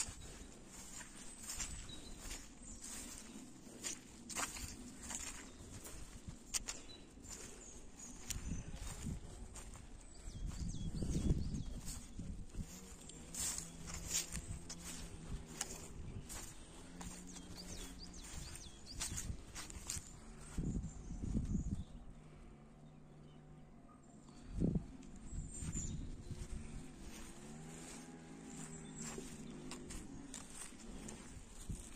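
Footsteps walking through grass. A few low rumbles of wind on the microphone come and go, the loudest about eleven seconds in and two more near the end.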